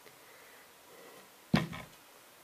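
Quiet room, then a single short knock of kitchenware about one and a half seconds in, as a spoonful of sugar goes into a pot of freshly boiled water.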